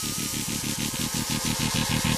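Build-up in an electronic dubstep track: a fast pulsing bass under a noisy synth wash, the pulses crowding closer and the level rising toward the end as the track heads into a drop.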